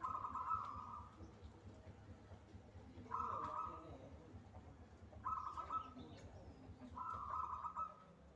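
Caged zebra dove (perkutut) cooing: four short phrases of rapid coo notes, roughly two seconds apart.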